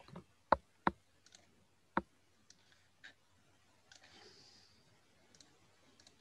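Sharp computer mouse clicks: three loud clicks in the first two seconds, then a few faint ones.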